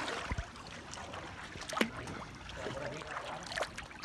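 Swimming-pool water lapping and splashing at a low level, with a few brief knocks, the sharpest about two seconds in.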